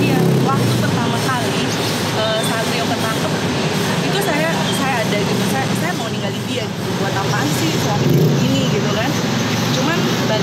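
A woman talking over a steady background noise.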